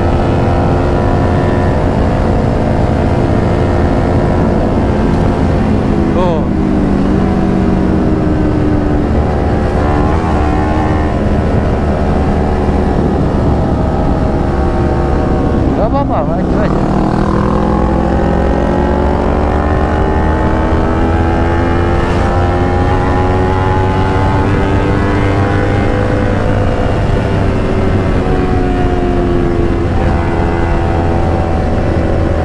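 Kawasaki Z250 motorcycle's parallel-twin engine running under way, heard from the rider's camera with wind rushing over the microphone. The engine note dips about six seconds in, and around sixteen seconds it drops and then climbs steadily for over ten seconds as the bike accelerates through the revs.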